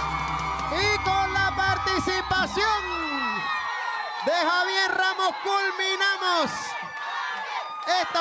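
Button accordion and band ending on a held final chord about three seconds in, with a studio audience cheering and whooping over it. The shouting and whooping carry on after the music stops.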